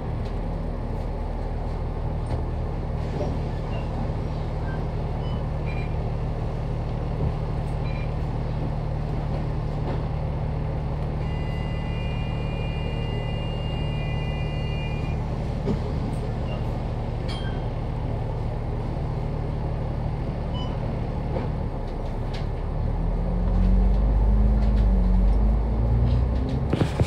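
Diesel engine of an SMRT MAN A95 double-decker bus idling steadily at a stop, heard from the upper deck inside the bus, then revving up with a rising note as the bus pulls away in the last few seconds. A steady high tone sounds for about four seconds midway.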